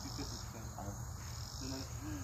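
A steady, high-pitched chorus of insects in the background, pulsing slightly.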